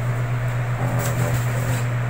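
Steady low hum of cold-storage refrigeration equipment, with a short click about a second in.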